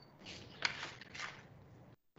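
Faint low-level handling noise on an open call microphone: two soft rustles and a single sharp click about two-thirds of a second in.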